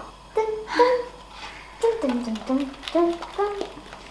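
An indistinct voice in a small kitchen, with a few faint light clicks.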